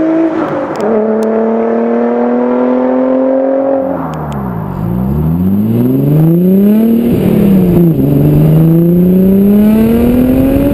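Audi B5 S4's TiAL turbo-kitted 2.7-litre twin-turbo V6 accelerating hard, its note climbing steadily in pitch and dropping at upshifts about a second in and again around eight seconds in. Midway the revs fall low and build back up.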